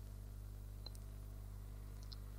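Steady low electric hum of the vapour phase reflow oven's cooling fan running in the cooling phase, with the heater switched off, and a faint tick a little before a second in.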